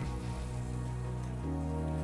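Background music with sustained low held notes, shifting to a new chord about one and a half seconds in.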